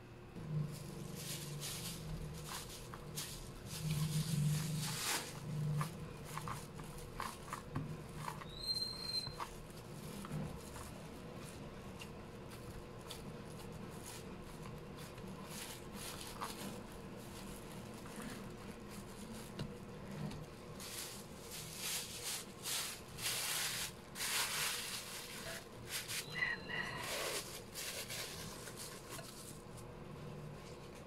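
Hands kneading soft bread dough, first in a glass bowl and then on a silicone mat: irregular squishing, pressing and soft knocks. Near the end there is a brief glassy clink as a glass bowl is set over the dough.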